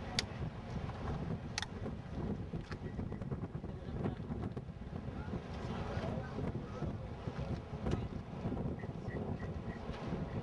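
Wind buffeting the camera microphone outdoors, a steady low rumble with a few faint clicks.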